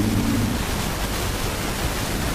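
Steady rushing noise, an even hiss with low rumble beneath it, in a pause with no voice; the tail of a chanted male phrase fades out at the very start.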